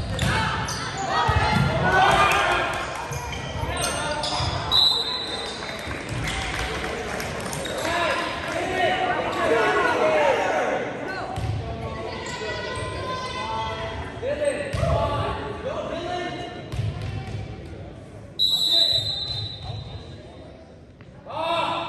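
Volleyball rally in a gym hall: ball hits and players' and spectators' shouts and cheers echo. A referee's whistle sounds shortly before five seconds in and again near the end.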